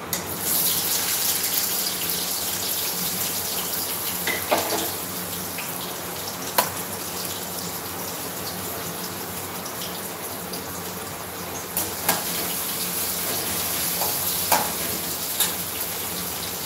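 Tomato rice sizzling in a pan on a gas stove, a steady hiss that starts just after the opening and slowly eases, with a few sharp clinks of a ladle against the pan as it is stirred.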